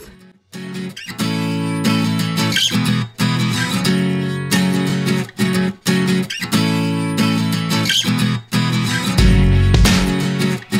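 Background music led by guitar, playing steady phrases of notes; a deeper bass comes in near the end.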